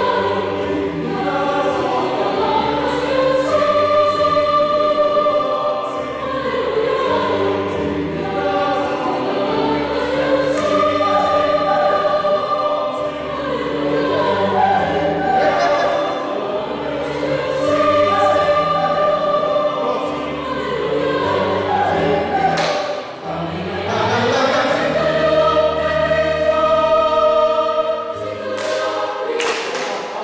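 Mixed choir of men and women singing in full chords, with an electronic keyboard playing along and low bass notes changing every second or so.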